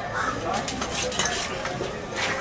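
A knife cutting fish on a wooden table, making a quick series of sharp clicks and knocks of the blade against flesh, bone and board.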